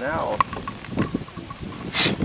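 A man's voice trailing off at the start, then wind rumbling on the microphone with a few light knocks, and a short gust of wind noise at the end.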